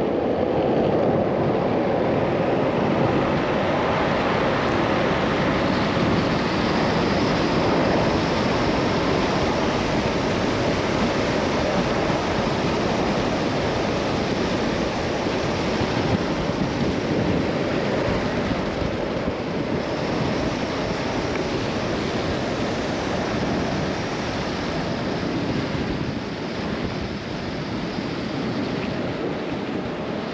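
Steady rush of wind over a helmet-mounted camera's microphone, mixed with longboard wheels rolling on asphalt at high downhill speed. It eases slightly near the end.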